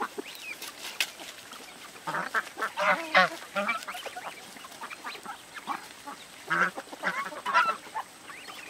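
A flock of domestic ducks quacking in short bursts. The calls cluster loudest about two to three and a half seconds in and again near the end, with scattered softer quacks between.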